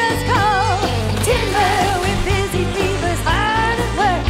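Saxophone solo over a full band, a bending, wavering melody riding on bass and drums in an upbeat song.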